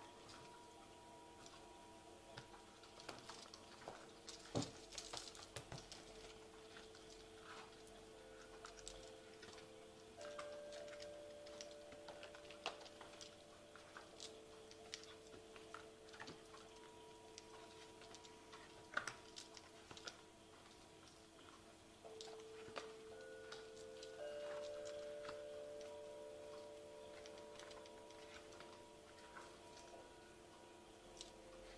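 Very quiet: faint soft music of long held notes that change pitch now and then, with scattered light clicks and taps.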